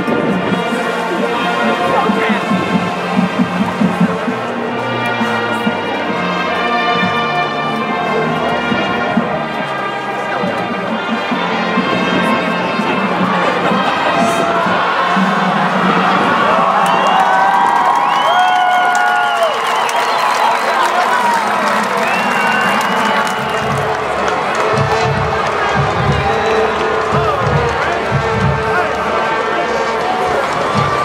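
Band music with held brass chords, giving way about ten seconds in to a stadium crowd cheering and shouting; low thumps sound under the crowd near the end.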